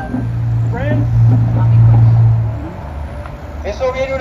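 A motor vehicle's engine drone on the street, swelling towards the middle and fading out about two and a half seconds in, with brief fragments of a voice over it.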